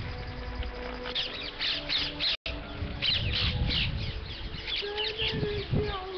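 A roosting bat colony squeaking: many short, high squeaks in rapid clusters, with wind rumble on the microphone. The sound cuts out completely for a moment a little past two seconds in.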